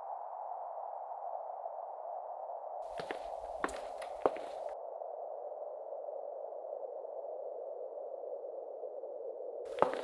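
A steady synthetic drone, a slightly rough hum in the middle range that sinks a little in pitch. About three seconds in, a hiss lasting almost two seconds carries three sharp clicks, and another click comes just before the end.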